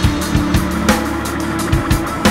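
Instrumental section of a raw punk rock song: a distorted, droning bass line under steady drum hits, with no vocals.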